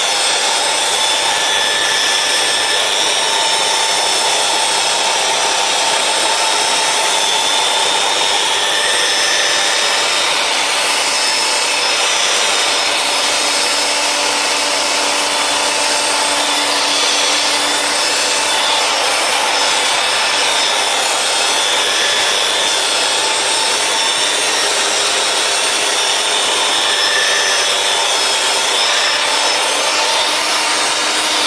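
Electric rotary polisher running steadily with its pad pressed on a ceramic floor tile: an even motor whine over the rubbing of the pad on the tile as scratches are polished out of the tile surface.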